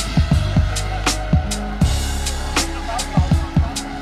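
Background music with a steady drum beat: kick drum, sharp cymbal or snare strikes, and held bass notes.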